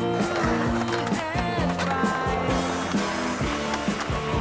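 Music with singing, loudest throughout, with skateboard wheels rolling on concrete heard under it.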